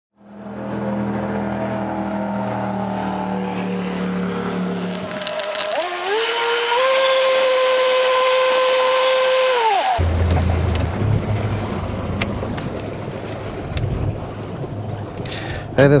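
A motor hums steadily, then rises in pitch to a higher steady whine and cuts off abruptly about ten seconds in. A low rumble with light knocks follows.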